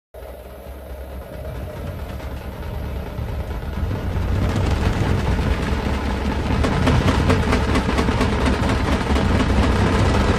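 A deep, steady rumble that starts abruptly and swells steadily louder, with a rushing noise building over it from about halfway through.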